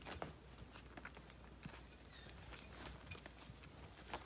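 Faint, scattered small wet clicks and smacks of Yorkshire terrier puppies licking soft meat pâté off a plate and pawing at it.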